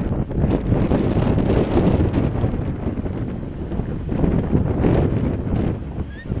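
Wind buffeting the microphone in uneven gusts, a low rumbling rush that swells and eases over the seconds.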